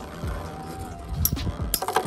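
Two Metal Fight Beyblades spinning in a clear plastic stadium: a faint whirring hum, with a few sharp metallic clicks in the second half as the tops touch and scrape.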